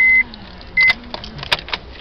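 A car's dashboard warning chime beeps with a steady high tone: one beep ends just after the start and a short one comes a little under a second in, followed by a few faint clicks inside the cabin.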